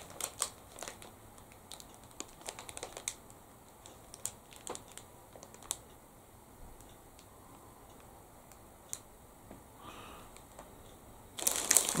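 Plastic snack packaging being handled: faint, irregular small clicks and crinkles, thickest in the first six seconds and sparse after that.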